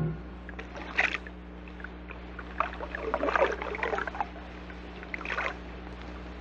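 Water sound effects on a record: irregular short splashes and gurgles, most of them from about two and a half seconds in, over a faint steady low hum, in a pause between music passages.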